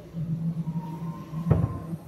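A plastic jug set down on a fiberglass mold with a single thump about one and a half seconds in, over a steady low hum.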